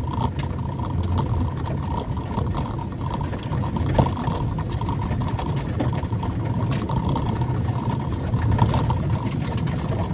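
Steady low rumble of a car driving on a wet dirt road, heard from inside the cabin, with a faint steady whine over it. Scattered light ticks run through it, with one sharper click about four seconds in.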